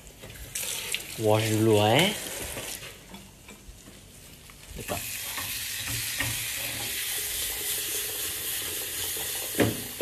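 Hot dogs frying in a pan on a gas burner: a steady sizzle sets in about five seconds in, with scattered clicks of the pan being stirred. A brief voice sounds near the start.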